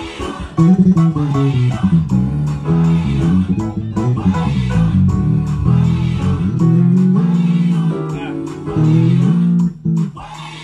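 Bass guitar playing a melodic line with other instruments over a steady beat of about two strokes a second, dropping out briefly just before the end.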